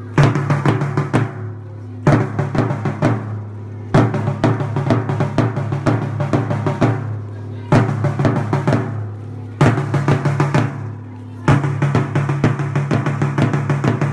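March-past drum music: snare and bass drum beating steadily with rolls, over a sustained low note, the drumming falling into phrases that restart about every two seconds.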